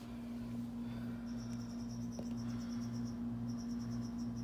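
A steady low hum throughout, with a fast, high-pitched chirping trill that comes in about a second in, breaks off briefly near three seconds and starts again.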